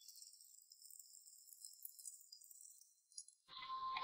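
Near silence, with only a faint high jingling shimmer from a soft music bed; the music grows fuller near the end.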